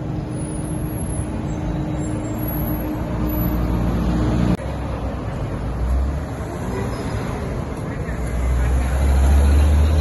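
Roadside city traffic noise: vehicles running on the street, with a low rumble that grows louder near the end. The sound changes abruptly about halfway through.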